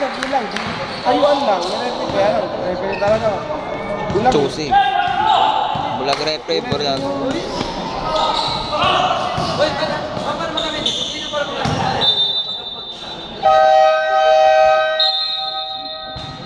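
A basketball bouncing and being dribbled on a gym court, with players' voices echoing in the hall. Near the end, a loud steady horn-like buzzer sounds for about two seconds.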